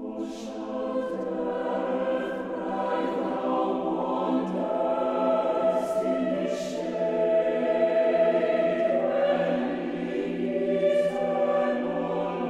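Choir singing slow, held chords, the voices entering together just before the start; a few sung 's' sounds hiss out sharply.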